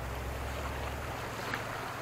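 Steady low rumble and hiss of outdoor wind and river ambience, with a faint tick about one and a half seconds in.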